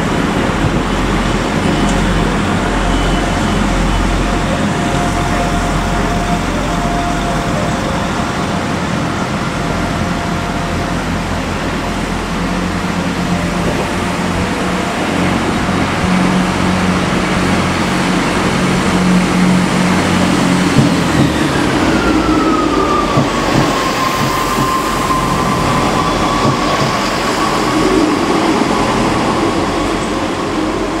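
Diesel multiple-unit trains running through a station, one moving off and another arriving. The engines and wheels on rail make a continuous rumble. About twenty seconds in, a high whine falls in pitch and then holds steady as the arriving train slows.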